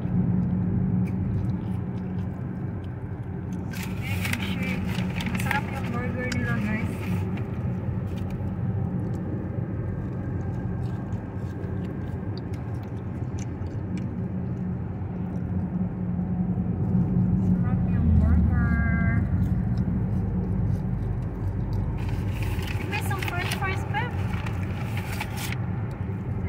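Steady road and engine noise inside a moving car's cabin, a low hum that swells briefly about eighteen seconds in.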